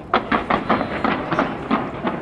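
Fireworks bursting in a rapid, irregular series of sharp bangs, about ten in two seconds.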